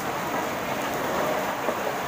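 A steady, even hissing noise with no voice in it, the same background noise that runs under the talk before and after.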